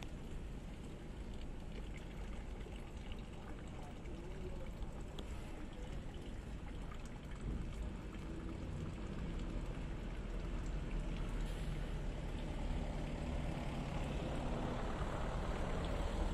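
Water trickling and flowing in a shallow concrete drain, a steady watery hiss over a low rumble that grows slightly louder near the end.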